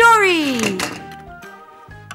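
A voice giving one long cry that falls in pitch, like a 'wheee' for a toy sliding down a slide, starting suddenly and dying away within a second, over light background music.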